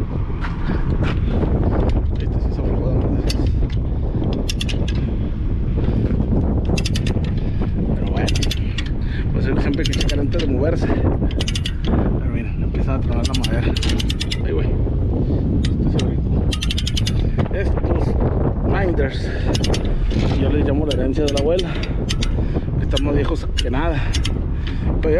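Ratchet load binders being worked on tie-down chains: many short metal clicks and chain clinks over a steady low rumble.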